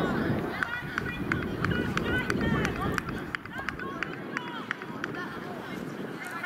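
Wind rumbling on the microphone, strongest in the first few seconds and easing about four seconds in, under distant voices of players on the pitch and a run of short high chirps and clicks.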